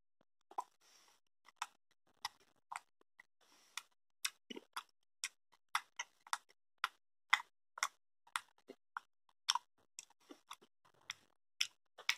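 Mouth sounds of someone chewing soft salty liquorice candy: short, sharp clicks and smacks, irregular, about two a second.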